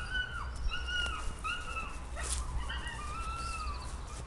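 Three-month-old puppy whining in about five short, high-pitched whimpers that rise and fall, the last one longer, while holding a retrieved quail in its mouth. A single sharp click about two seconds in.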